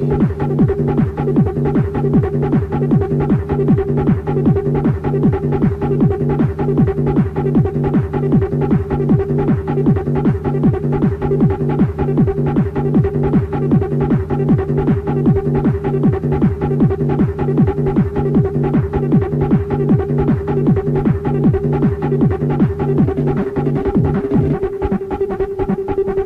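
Electronic dance music from a DJ set: a fast, steady beat under held low synth notes, with no change through the stretch.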